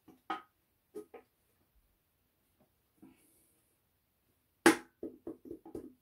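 Metal clicks and knocks from the number-two connecting rod and piston being worked out of a BMW N52 engine block. There are a few light clicks, then one sharp, loud knock about two-thirds of the way in, followed by a quick run of smaller knocks.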